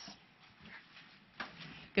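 Faint rustling of worm castings and shredded-paper bedding being handled in a worm bin, with one soft knock about one and a half seconds in.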